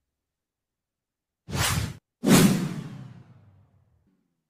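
Two whoosh sound effects from slide animations: a short one about a second and a half in, then a louder one just after two seconds that fades away over about a second and a half.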